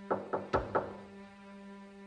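Four quick knocks on a wooden door, close together in under a second.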